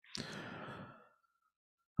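A man's soft, breathy exhale, a sigh lasting under a second.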